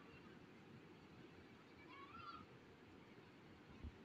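Faint, steady hiss of heavy rain falling on a street, with one brief faint high call about halfway through.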